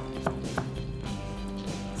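Chef's knife chopping carrot on a wooden cutting board: three or four quick strokes in the first half second or so, then stopping. Background music with held notes runs under it.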